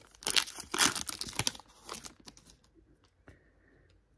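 Crinkling and tearing of a trading-card pack wrapper being opened and handled, busy for about a second and a half and then dying down to faint handling noise with a single click near the end.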